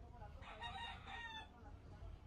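A rooster crowing once, faintly, a pitched call of about a second in two parts.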